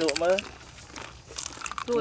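Crisp fried green-banana chips crackling and rustling as hands pick through a heaped basket of them and people bite into them, in short, dry crackles near the middle.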